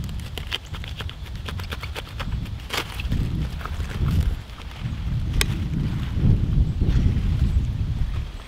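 A knife cutting through the base of a head of romaine lettuce, the crisp leaves snapping and rustling in a run of sharp crackles, with a few louder single snaps later on. A low rumble of wind on the microphone lies underneath.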